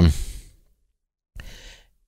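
A man's drawn-out 'um' trailing off into a sighing exhale, then a pause of dead silence, and a short, faint breath drawn in near the end before he speaks again.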